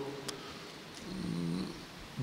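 A pause in speech: low room tone, with a faint, brief low voiced hum about halfway through.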